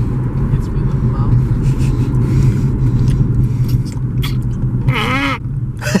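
Steady low rumble of a car's engine and road noise heard inside the cabin while driving, with a short voice sound about five seconds in.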